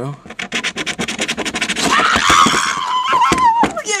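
A coin scratching the latex coating off a paper scratch-off lottery ticket in quick repeated strokes. From about halfway through, a person's drawn-out, high-pitched excited vocal sound rises over the scratching.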